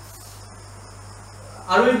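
Quiet room tone with a steady low hum and a faint, steady high-pitched whine or chirring, then a man's voice starts near the end.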